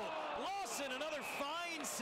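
Mostly speech: a hockey play-by-play commentator's excited voice calling the action.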